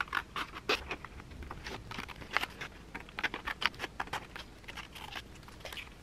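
Small scissors cutting printed cardstock paper: a quick, irregular run of short snips and crisp paper crackles.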